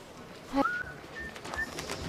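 A person whistling: one quick rising note that holds, then two short higher notes, as a carefree, happy whistle.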